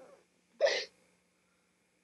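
A single short sob, a catch of breath, from someone crying over an injury, about half a second in.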